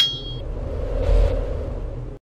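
Logo-intro sound effect: a high metallic ringing tone that fades within half a second, over a low rumble that swells with a brief hiss a little past the middle.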